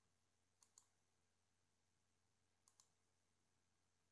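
Near silence, broken by two faint double clicks about two seconds apart, the first under a second in and the second near three seconds.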